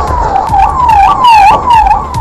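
Emergency vehicle siren sounding a fast yelp, its pitch leaping up and sliding back down about twice a second. Underneath are a low rumble and scattered sharp cracks.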